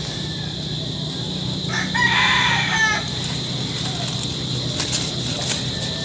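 A rooster crowing once, about two seconds in and lasting about a second, over a steady low background hum.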